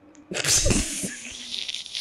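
A sudden, breathy burst of laughter about half a second in, trailing off into softer exhaled laughing.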